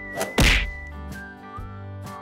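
Cartoon sound effect of a toy surprise egg popping open: a sharp whack about half a second in, under a high whistle tone that is held and stops about a second in. Light background music continues underneath.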